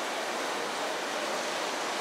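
Steady hiss of light rain falling, an even wash of noise with no distinct drops or events.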